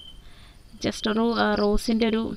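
Speech only: a short pause, then a voice talking again from about a second in.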